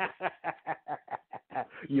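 A man laughing: a quick run of short chuckles, about seven or eight a second, running into speech near the end.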